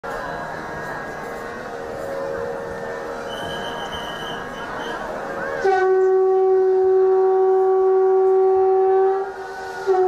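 Conch shell (shankh) blown in one long, steady, horn-like note that starts about halfway through and is held for about three and a half seconds. It dips briefly, and a fresh blast starts near the end. Before the conch comes in there is a dense mixed din.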